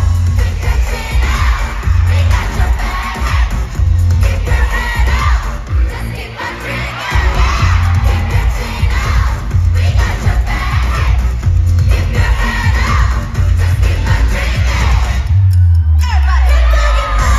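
Live K-pop dance-pop performance over an arena sound system: a heavy, pulsing bass beat with female vocals, and the crowd cheering and singing along. The beat drops out briefly about seven seconds in, then resumes.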